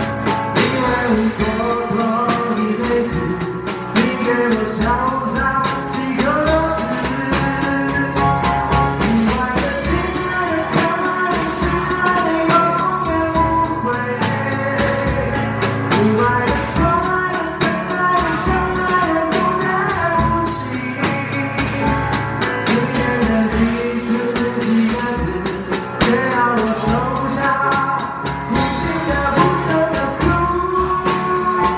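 Drum kit played with sticks along to a recorded song with a singer. Steady, dense drum and cymbal strokes sit under the vocal melody.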